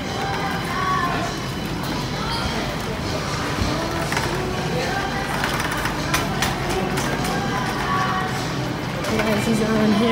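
Background music and indistinct voices in a shop, with a few scattered sharp clicks around the middle.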